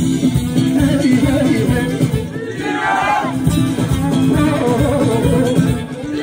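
Amplified live Kurdish wedding music: a band playing steady low accompaniment under a wavering, ornamented melody line that swells about three seconds in.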